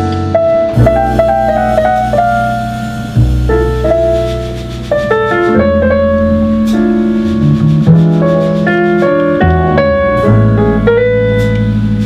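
A jazz piano trio playing live: grand piano chords and melody lines over plucked double bass notes, with drums played lightly behind.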